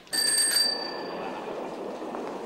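A small bell struck once, ringing with several high tones that fade within about a second, over a steady background hiss.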